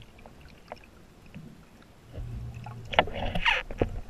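Muffled underwater sound: scattered faint clicks, then a low rumble from about halfway that swells into a loud rush of churning water and bubbles near the end as a swimmer's fins kick close by.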